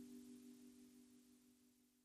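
Near silence: the faint tail of a sustained two-note ringing tone, wavering slightly in loudness as it fades away.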